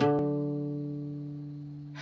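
A guitar chord left ringing after a strum, its tone held steady and fading slowly away.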